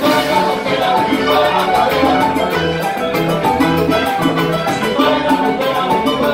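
Live salsa band playing an up-tempo number with a steady beat, with bass, keyboard and drum kit heard together.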